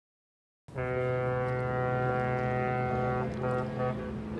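A ship's horn sounding one long steady blast. It starts suddenly under a second in, and its upper tones fade out near the end while a low hum carries on.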